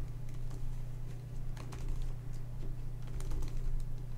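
Plastic corners of a Redi Cube twisty puzzle being turned by hand, giving a run of light, irregular clicks, over a steady low hum.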